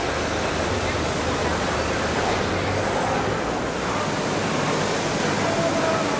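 Steady ambience of a busy covered market hall: a dense wash of noise with indistinct voices and a vehicle engine running.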